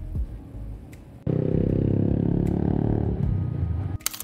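A motor vehicle engine running loud and close, cutting in abruptly about a second in.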